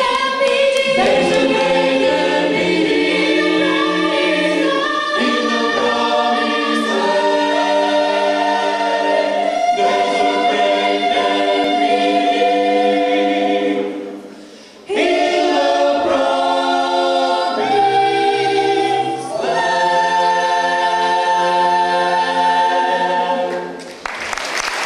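Mixed-voice a cappella group singing a gospel spiritual in close harmony, on long held chords. The singing breaks off for about a second midway, then comes back and ends on a held final chord that fades out near the end.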